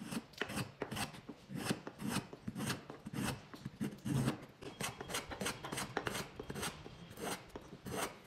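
Wood being abraded by hand: quick, uneven scraping strokes, about three a second.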